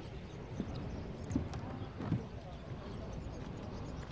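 Footsteps on sandy granite bedrock, three soft thuds at a walking pace in the first half, over faint voices of people in the background.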